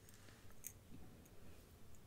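Near silence: room tone with a few faint small ticks.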